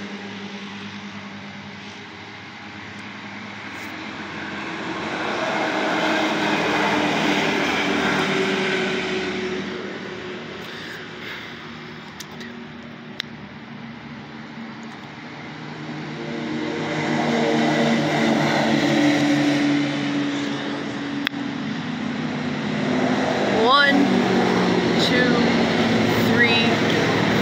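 Side-by-side UTVs driving past on the road, their engines swelling up and fading away twice: one pass about five seconds in, then a longer one from about sixteen seconds on.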